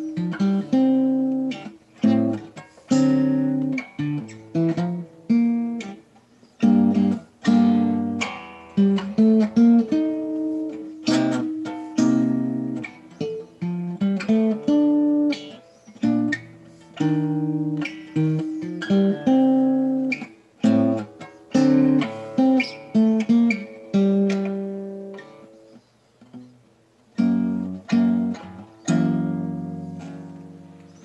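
1946 Epiphone Emperor acoustic archtop guitar, with a carved spruce top and maple back and sides, played solo: a run of chords, each struck sharply and left to ring and fade before the next.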